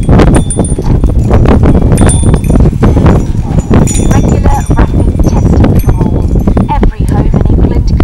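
Indistinct voices with repeated clicks and knocks.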